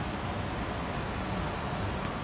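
Steady city street background noise: an even hiss over a low rumble, with no distinct events.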